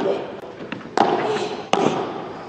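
Padel rackets striking the ball in a rally that opens with a serve: three sharp hits about a second apart, with a fainter tap between the first two and the hall's echo after each.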